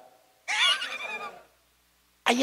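Brief high-pitched laughter from the congregation, starting about half a second in and lasting about a second.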